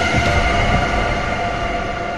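Horror soundtrack stinger: a shrill, metallic drone of several steady high tones over a low rumble, slowly fading.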